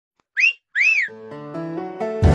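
Two quick whistle sound effects, each rising and then falling in pitch, followed by a short electronic melody of stepped notes: a channel logo jingle.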